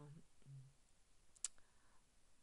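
A woman's drawn-out hesitation sound trailing off, then near silence broken by a single short, sharp click about one and a half seconds in.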